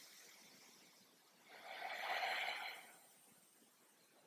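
A single audible breath from a person lying resting on a yoga mat, lasting about a second and a half near the middle, with faint room tone around it.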